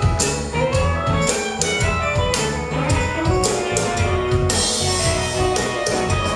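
Live blues band playing, with drum kit, electric bass and electric guitar.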